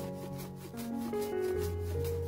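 Fresh ginger being sliced on a plastic mandoline slicer: a rasping scrape with each stroke, about four strokes a second, over background music.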